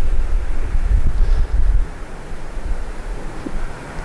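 Wind buffeting the microphone: a gusty, uneven rumble that sets in suddenly, is strongest in the first two seconds and eases after that.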